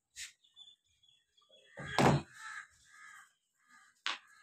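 A loud knock about two seconds in as household things are handled, followed by three short harsh calls about half a second apart.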